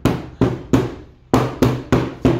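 Steel claw hammer striking a pine door panel, about six sharp blows at uneven intervals, each with a short ring. The strikes are deliberately random, denting the new wood to make it look old and weathered.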